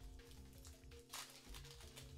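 Quiet background music with steady held tones, and a brief faint crinkle of a foil trading-card booster pack being torn open about a second in.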